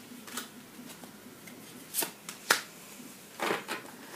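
Tarot cards being handled and laid down on the table: a few crisp card flicks and slaps, the sharpest about two and a half seconds in, with a small cluster of softer ones near the end.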